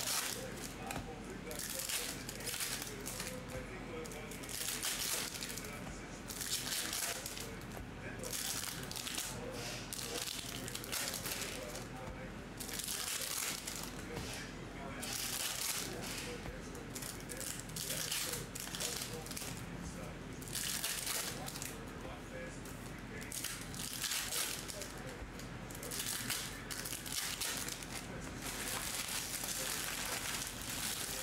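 Foil wrappers of Topps Chrome hobby card packs crinkling and tearing as the packs are ripped open by hand, in repeated rustles every second or two.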